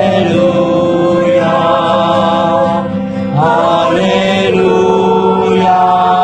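A woman singing a slow worship song in long held notes, sliding up into a new note a little past halfway, with steady acoustic guitar accompaniment underneath.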